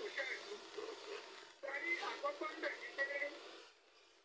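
Faint speech in the background, thin-sounding with no low end, talking in short phrases and stopping shortly before the end.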